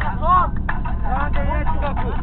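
Steady low engine and road rumble inside a moving van's cabin, with high-pitched voices chattering over it.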